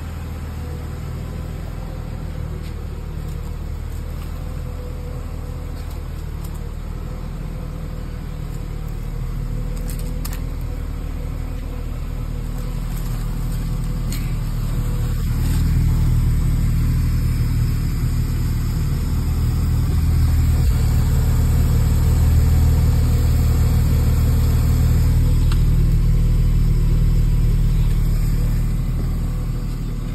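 Car engine idling steadily at the exhaust, a low even drone that grows louder from about halfway through as the tailpipe and muffler come close, then eases near the end.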